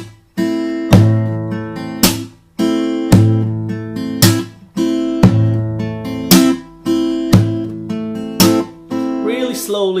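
Takamine acoustic guitar playing a percussive fingerstyle lick on an A minor chord: thumb-picked bass notes on strings 5, 4 and 3, then a slap on the strings with a strum, and the chord picked again. The sharp slaps fall about once a second, with the chord ringing between them.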